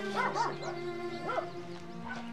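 A dog barking in a few short yelps, two or three close together soon after the start and one more past the middle, over soft background music holding steady notes.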